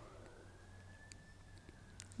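Near silence: room tone with a low hum, and a faint tone that rises early on and then holds steady.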